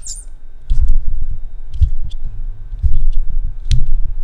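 A parrot perched on a desk microphone, its feet and beak knocking and scraping on it: a run of loud, low, irregular thumps of microphone handling noise with a few faint ticks.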